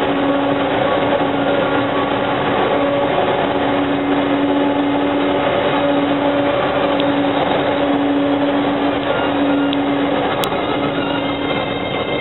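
Steady, loud driving noise of a DAF truck and silo tanker moving through a road tunnel, heard from the top of the tank: a rushing roar with a steady droning hum underneath.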